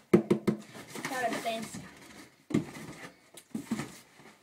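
Cardboard box being gripped and turned by hand: a few sharp knocks and scuffs of cardboard, three in quick succession at the start and more later, with a little quiet speech in between.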